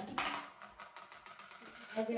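Dishes clattering as a child pulls a plate out of a low kitchen cupboard: a sharp clatter at the start that dies away within about half a second, then faint handling.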